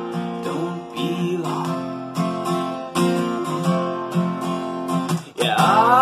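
Acoustic guitar strummed in a steady rhythm, its chords ringing between strokes. A brief break just past five seconds is followed by a louder strum and a singing voice coming in near the end.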